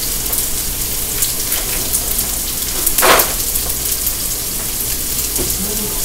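Cubed chicken breast frying in oil in a nonstick skillet, a steady sizzle with fine crackling pops as the pieces brown and crisp. A brief louder noise cuts in about three seconds in.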